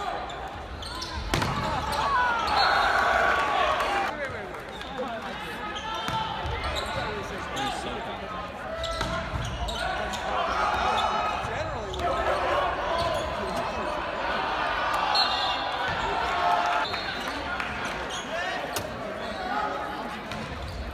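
Men's volleyball rallies in a large gym: the ball is struck with sharp slaps and thuds several times, under steady shouting and cheering from players and spectators, echoing in the hall.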